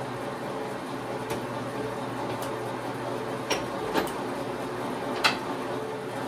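Precision Matthews PM 1228 bench lathe running with its spindle turning, a steady motor and gear hum with several fixed pitches. A few sharp clicks come through it.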